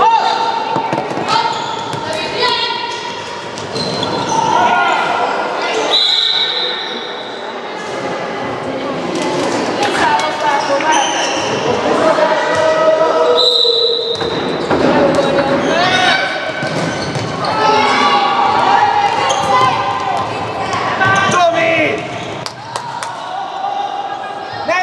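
A handball bouncing on a wooden gym floor during youth handball play, with repeated thuds under continuous shouting from children and spectators. All of it echoes in a large sports hall.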